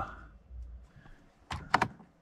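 A quick cluster of sharp clicks about one and a half seconds in: the cab's light switch being flicked to turn the headlights on.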